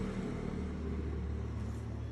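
A steady low hum and rumble in the background, like a running motor.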